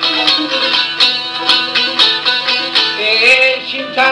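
Albanian folk music: a rapid run of plucked notes on a long-necked lute (çifteli), with a man's singing voice coming in near the end.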